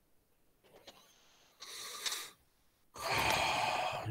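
A person breathing close to the microphone: a short, faint breath about a second and a half in, then a longer, louder breath near the end.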